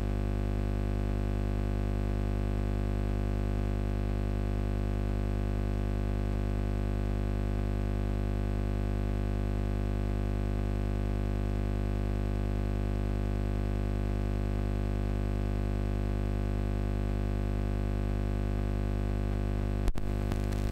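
Steady electrical mains hum, a buzz of many evenly spaced overtones, starting abruptly out of dead silence and holding unchanged throughout, loud enough to bury any speech.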